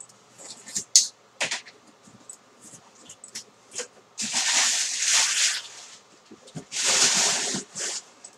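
A cardboard shipping box being opened with a few sharp clicks and snaps, then two long crinkling rustles, each a second or more, as crumpled brown packing paper is pulled out of it.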